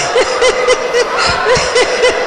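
Audience laughter in a hall, carried by one high-pitched laugh that pulses in quick, even 'ha-ha-ha' beats, about four a second.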